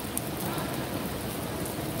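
Steady rain falling on wet pavement, an even hiss.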